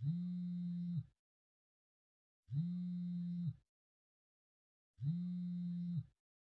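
A low buzz that repeats three times, each pulse about a second long and starting every two and a half seconds. Each pulse slides up in pitch as it starts, holds steady, and slides down as it stops.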